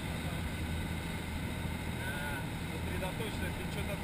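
Motorboat under way, a steady low drone of engine and rushing wake, muffled, with wind on the microphone.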